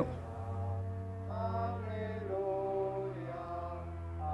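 Slow background music of sustained, chant-like chords over a low held drone, with the upper notes shifting about once a second.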